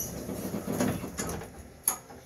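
Old modernized Otis bottom-driven hotel lift making a low, shifting mechanical noise, with one sharp click near the end. It is one of the odd sounds this lift is known for.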